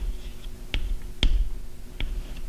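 Chalk tapping against a chalkboard while Arabic script is written: a few sharp taps, about half a second apart.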